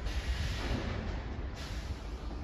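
Outdoor background noise: a steady low rumble with a rushing hiss that swells in the first second and a half.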